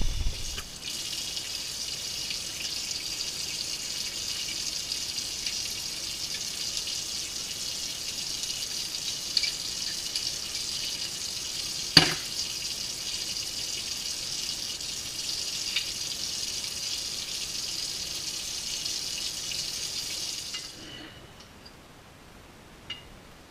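A steady, high hiss of liquid that stops fading out near the end, with one sharp click about halfway through.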